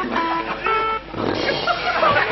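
A live band playing music with electric guitar.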